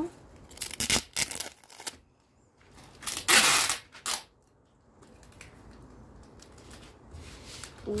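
Clear packing tape ripped off its roll in one loud, hissing screech lasting about a second, about three seconds in. Before it come rustles and light knocks of the wrapped cutting being handled.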